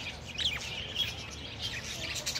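A flock of budgerigars chattering: quick, high chirps and squeaks, the loudest a sharp falling chirp about half a second in.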